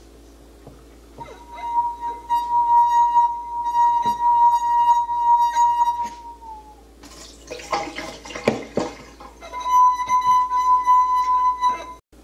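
Wine glass partly filled with water made to sing by a wet finger rubbed around its rim: a steady, pure ringing tone holds for about five seconds and then slides down in pitch as it dies away. After a short burst of clinks and knocks, the glass sings again on the same note near the end.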